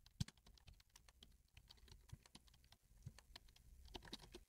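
Near silence with a few faint, scattered clicks, the clearest just after the start.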